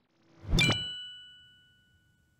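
Logo-reveal sound effect: a single sharp hit about half a second in, then a bell-like ding that rings on and fades out within about a second.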